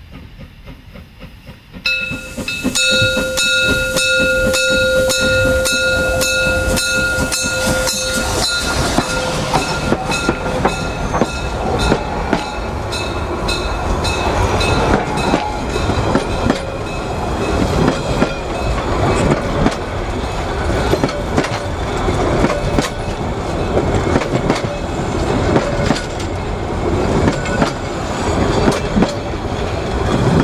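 A narrow-gauge steam train's whistle sounds about two seconds in: one steady chord of several tones, held for some seven seconds. Then the train's coaches roll close past, with a dense rumble and the wheels clicking over the rail joints.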